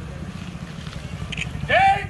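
A steady low rumble with faint voices in the background. Near the end, one voice breaks into a loud, high, drawn-out shout, the start of a slogan chant.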